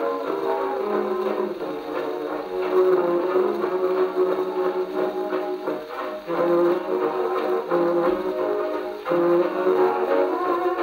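A dance orchestra playing an instrumental passage, with brass to the fore, from a 78 rpm shellac record on an HMV 157 cabinet gramophone. The sound has little high treble, with short breaks between phrases about six and nine seconds in.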